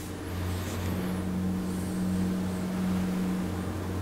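A low, steady mechanical hum: a deep tone with a second, higher tone joining about a second in. Both fade near the end.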